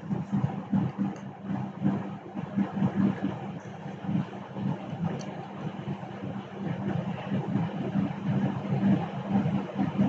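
Continuous rumbling background noise that rises and falls irregularly in loudness, with no speech.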